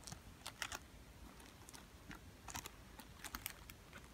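Faint, scattered clicks and crinkles of plastic-sealed, card-backed acrylic key holder packets being handled and set down, in a few short clusters.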